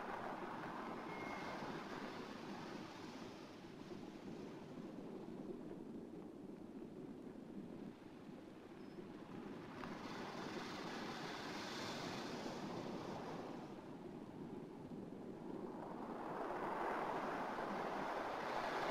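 Sea surf washing onto a sandy beach: a steady rush of breaking waves that swells and ebbs every few seconds, loudest near the end.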